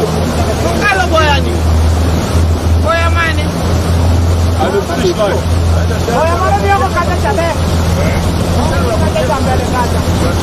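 Motorboat under way: the engine drones steadily and low beneath a constant rush of water and wind past the hull. Voices call out briefly a few times over it.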